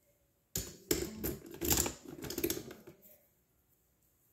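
Rapid, irregular clicking and clattering of coloring pens or markers being handled, starting about half a second in and dying away after about three seconds.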